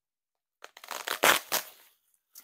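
Packing wrap crinkling and rustling as an item is unwrapped by hand, in a cluster of crackles starting about half a second in, loudest near the middle, then dying away.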